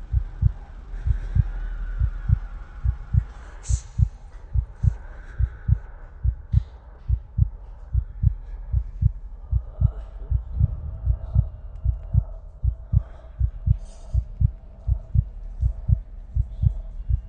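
Heartbeat sound effect: steady, regular low thumps, with faint clicks and a soft held tone over it in the second half.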